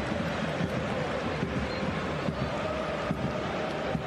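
Football stadium crowd noise, a steady mass of voices from the stands with no single event standing out.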